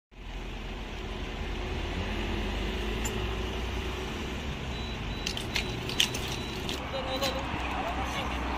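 A steady low rumble of road vehicles and traffic, with indistinct voices and a few sharp clicks in the second half.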